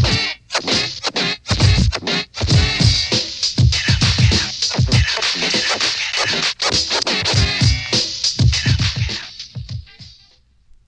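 Old-school hip hop instrumental: turntable scratching over a drum beat, fading out near the end.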